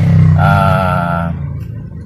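A man's drawn-out hesitation sound, a single held "ahh" lasting about a second, over a steady low hum in the car cabin.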